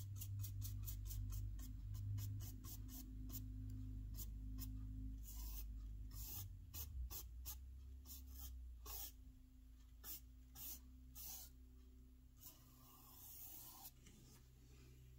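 Faint strokes of a small paintbrush, damp with thinner, against the brick-textured plastic wall of an HO scale model building, wiping out excess oil paint. Quick short strokes come at about four a second for the first few seconds, then slower, longer strokes that fade toward the end.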